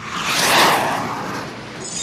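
A whoosh sound effect: a rush of noise that swells over about half a second and fades away over the next second.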